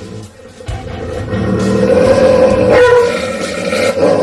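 Doberman growling and snarling on command, growing steadily louder over the first two seconds and then holding, with music underneath.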